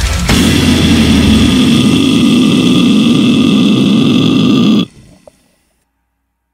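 Brutal death metal song ending: the full band texture breaks off and one distorted note is held for about four and a half seconds, then cuts off abruptly, leaving silence after a brief fade.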